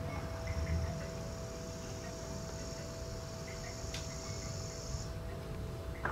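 High-pitched insect trill, held steady for about five seconds and then stopping, over a faint steady hum.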